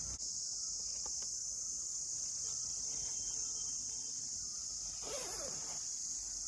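A steady, high-pitched chorus of insects shrilling without a break.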